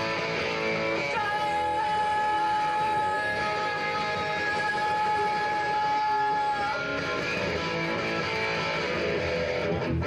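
Live electric guitar rock played by a voice-and-guitar duo, with a long steady high note held for about five seconds from about a second in.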